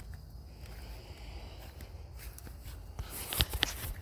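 Footsteps through grass with rustling as the phone is handled, and a low steady rumble underneath; a few sharper scuffs or clicks come about three and a half seconds in.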